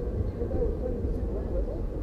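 Low, steady rumble of city street traffic.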